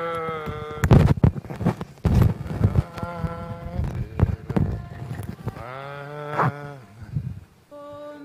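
A single voice chanting a psalm in Byzantine chant, holding long notes and stepping between them, with many sharp clicks scattered through the chant.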